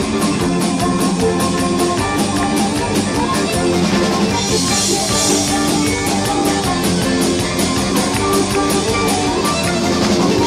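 Live folk-rock band playing an instrumental passage: fiddle, electric guitar and drum kit, loud, with a fast steady beat.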